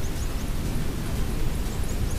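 A steady rushing noise with a strong low rumble, even in level throughout.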